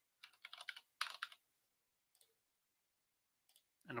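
Faint keystrokes on a computer keyboard, typing a name into a search box: a quick run of taps lasting about a second, then a couple of single faint clicks.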